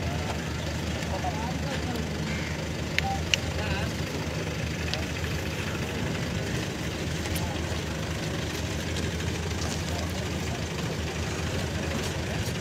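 A vehicle engine idling with a steady low hum, under faint background chatter of voices. There is a single sharp click about three seconds in.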